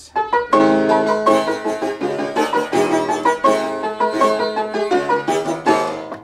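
Fortepiano played in a quick Turkish-style dance tune with its bassoon (fagotto) knee lever engaged, leather-covered brass strips pressed against the bass strings giving the notes a raucous buzz. The playing starts right at the beginning and stops at the end.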